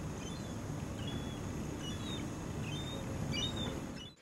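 Outdoor background noise, a steady low rumble, with many faint, short, high bird chirps scattered through it.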